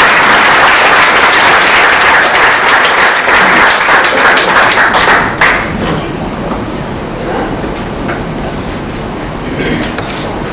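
Audience applause, a dense clatter of many hands clapping that stops about five and a half seconds in, leaving quieter room sound.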